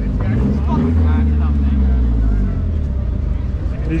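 A car engine running close by, its low steady drone loudest from about a second in and fading in the last second, with background chatter from a crowd.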